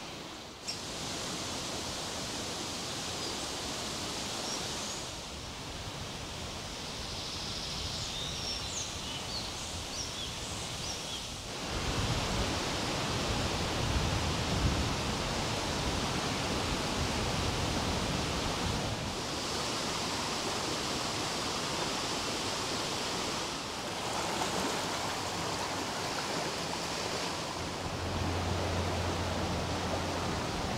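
Steady outdoor rushing noise of moving river water and wind in the trees. A few short bird chirps come through between about three and ten seconds in. The noise shifts at several cuts and grows louder with a deeper rumble from about twelve seconds in.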